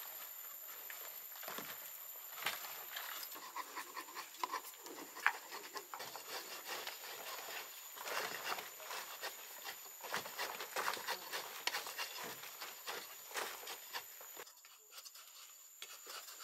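Small bamboo-handled hand hoes scraping, scratching and chopping at loose dry earth, an irregular run of scrapes and small knocks.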